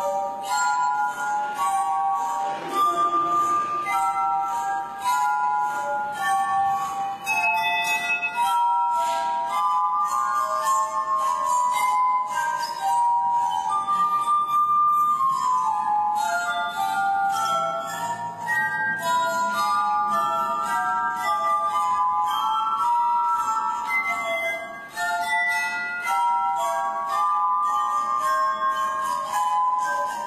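Drinking glasses played as a musical instrument: a continuous melody of clear, ringing pitched notes, often two or three sounding together, each note starting sharply.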